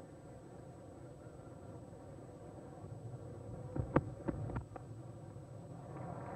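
Cricket bat striking the ball: one sharp crack about four seconds in, among a few smaller knocks, over the steady low murmur of the Test ground crowd on an old TV broadcast soundtrack.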